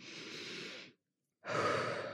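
A woman breathing: a soft breath in, then a louder, partly voiced sigh out starting about a second and a half in.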